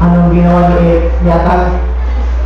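A voice singing in long held notes, about two sustained notes with a short break between, over a steady low electrical hum from the recording.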